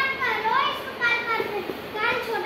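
A high-pitched voice calling out in sing-song tones that rise and fall, with no clear words.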